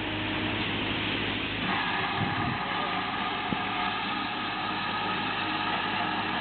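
GWR pannier tank steam locomotive 9466 moving off along the platform with its train, over a steady low hum and the chatter of onlookers; about two seconds in, a steady high-pitched sound of several tones starts and holds.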